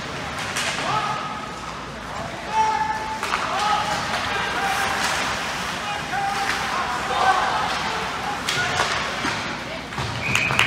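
Ice hockey play in a rink: sharp knocks of sticks and puck against the boards every second or two, with short raised calls from players and spectators in between.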